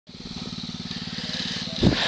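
A small engine running steadily with an even pulse, and one short thump near the end.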